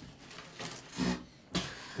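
Faint sounds from a person near a headset microphone: a brief throat sound about a second in, then a short rush of hiss.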